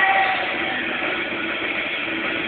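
Live rock band playing loud, heard as a dense, distorted wall of guitars and cymbals with faint sustained notes, muffled and overloaded as through a camcorder microphone.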